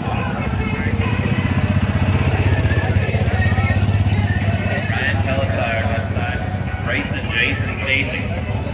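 Car engine running at idle: a steady low pulsing rumble that swells over the first couple of seconds and eases after about six seconds.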